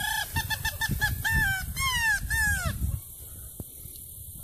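A man imitating a bird by mouth with goose-like honking calls: a quick run of short notes, about six a second, then three longer calls that fall in pitch, stopping about three seconds in.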